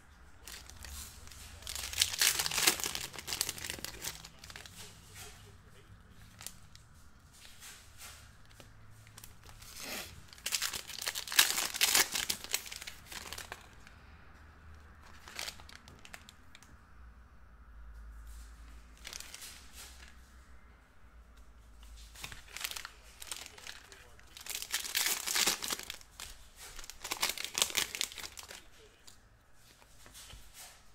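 Topps Tribute baseball card packs being torn open and their wrappers crinkled, in four loud crackling bursts, with quieter rustling of cards being handled in between.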